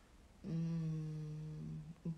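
A woman humming one long, level 'mmm' with her lips closed, starting about half a second in and lasting about a second and a half: a thinking hum, a pause to consider a question.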